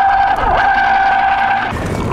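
Electric citrus juicer motor whirring as an orange half is pressed onto its spinning reamer. The steady whine dips briefly in pitch about half a second in and cuts off shortly before the end.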